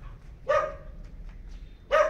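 A dog barking twice, two short barks about a second and a half apart.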